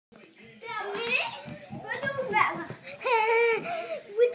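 Toddlers' high voices yelling and squealing in play, without words: a few short calls, then one longer, held cry near the end.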